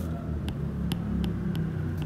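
A steady low background rumble, with a few light, irregular clicks from a stylus tapping on a writing tablet as words are handwritten.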